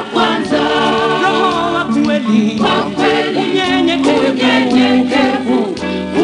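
A Swahili gospel song sung by several voices in harmony, with held, wavering notes.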